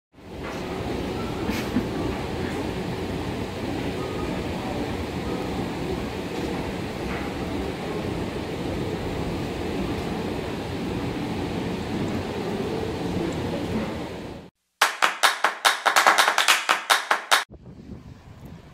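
Steady ambience of an airport corridor: a low, even rumble with faint distant voices, which cuts off about fourteen seconds in. A quick run of loud, sharp, rhythmic beats follows for about three seconds.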